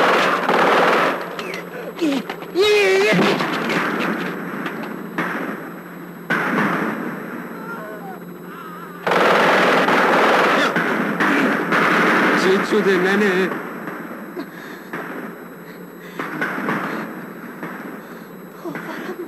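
Automatic rifle fire in long, loud bursts at the start, about two and a half seconds in and again about nine seconds in, with quieter stretches between.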